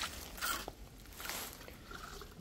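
Steel trowel scraping over the fresh cement top of a tomb, two faint strokes: about half a second in and again after a second.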